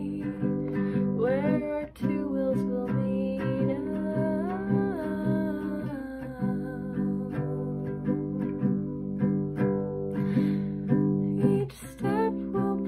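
A woman singing a melody over her own acoustic guitar chords, with a short break in the playing just before the end.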